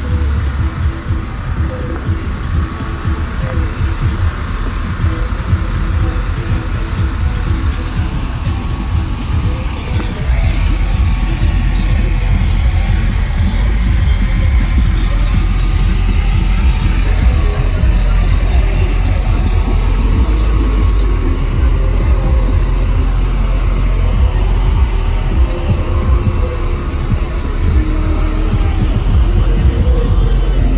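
Bass-heavy music playing through a car audio system, its deep sub-bass getting stronger about ten seconds in.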